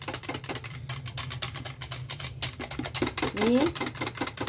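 A wire whisk rapidly clicking and scraping against the sides of a plastic measuring jug while it stirs red velvet rice-flour batter, in quick, even strokes.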